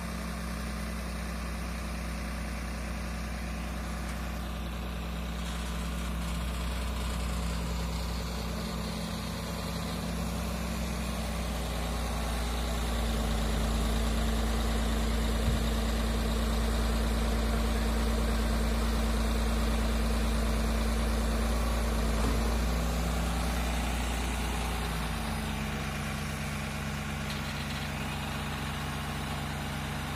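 New Holland tractor's diesel engine running steadily while its front loader arm is worked. The engine note steps up about twelve seconds in, holds higher and louder, then drops back down about twenty-five seconds in.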